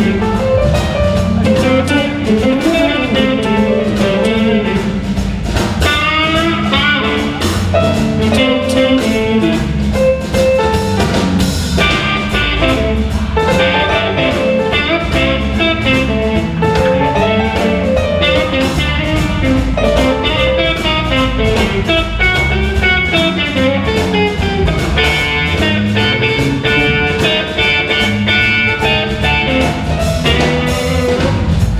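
Live blues band playing an instrumental passage with no vocals: electric guitar lines over electric bass, keyboard and drum kit, at a steady loud level.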